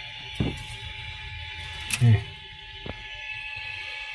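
A few small clicks and knocks from hands working on a 3D printer's multi-material unit, over a steady hum with high steady tones. A short low murmur comes about two seconds in.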